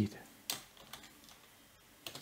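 Computer keyboard typing: a few keystrokes, the clearest one about half a second in, the others faint.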